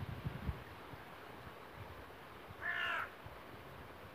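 A single short, harsh bird call, like a crow's caw, about two and a half seconds in. A few soft, low knocks come in the first half-second.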